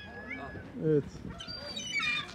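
Stray cats meowing: a short high call early on, then several overlapping calls near the end.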